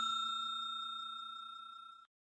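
Bell-like chime sound effect ringing out in several pitches and fading steadily, then stopping suddenly near the end.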